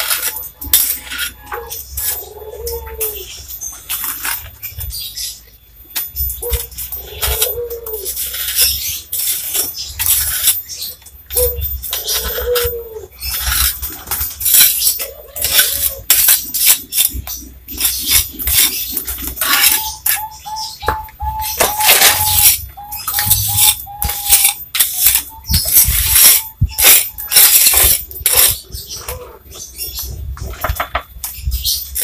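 A small steel trowel scraping and tapping wet mortar along a concrete edge, in many short irregular strokes. An animal calls several times in the background, including a quick run of repeated short notes a little past the middle.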